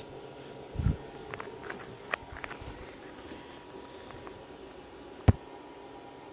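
Small gasless MIG welder idling on a modified sine wave inverter, giving a faint steady electrical buzz. Over it come a few light handling knocks and clicks, and one sharp click about five seconds in.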